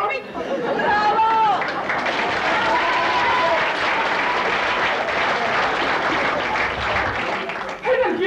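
Audience applauding for several seconds, with a few voices calling out over the clapping about a second in.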